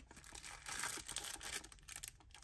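Faint, irregular crinkling of thin plastic packaging as small bagged accessories are handled.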